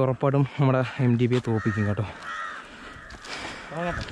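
A man's voice in short, quickly repeated shouts for about two seconds, then a crow cawing.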